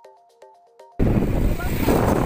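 A soft chiming melody of evenly paced notes cuts off abruptly about a second in, giving way to loud wind noise buffeting the microphone of a camera riding along on a bicycle.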